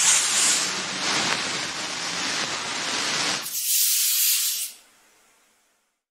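A loud, even rushing hiss for about three and a half seconds, then a brighter, higher hiss for about a second that fades out.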